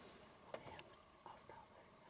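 Near silence with a faint whisper and a few soft clicks.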